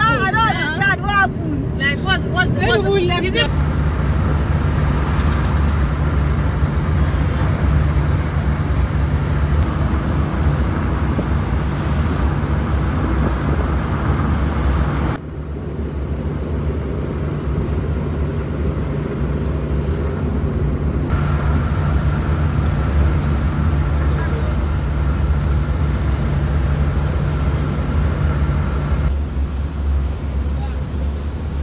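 Engine and road noise heard from inside a moving minibus: a steady low rumble, with a voice briefly at the start. The rumble drops abruptly about halfway through, then returns with a slightly different tone.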